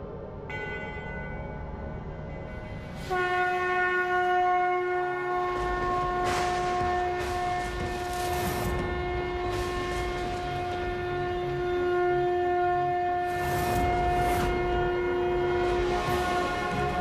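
Conch shell (shankh) blown in one long, steady horn-like note that begins about three seconds in and is held without a break, heralding a ritual. Two swells of rushing noise rise and fade over it.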